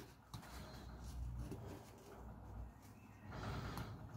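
Faint scraping of a carving knife paring green wood from a small stick as it undercuts, with a slightly louder, longer stroke near the end.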